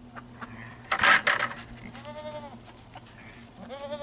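A Boer goat bleating twice, each call a short rise and fall in pitch. A brief rustling noise comes about a second in.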